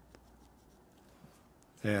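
Faint scratching and light tapping of a pen making small measurement marks on a card pattern along a steel ruler, with two small ticks. A man's voice starts just before the end.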